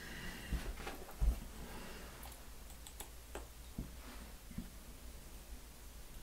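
Faint, scattered small clicks and taps of tiny metal screws and a hex screwdriver being handled against an aluminium RC crawler wheel, the loudest a light knock about a second in.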